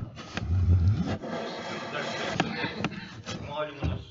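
A broad rustling noise with scattered clicks and a low bump about half a second in, and indistinct voices near the end.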